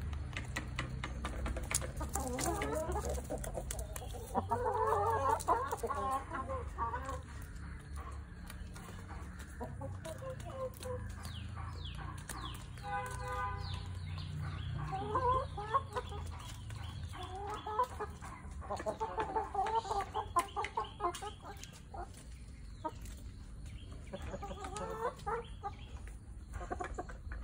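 Backyard chickens, hens and roosters, clucking in repeated bursts as they feed, with one short steady-pitched call about halfway through.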